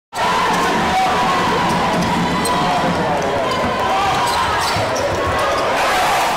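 Live basketball game sound: the ball bouncing on the court and short sneaker squeaks over a steady din of crowd voices in an indoor arena.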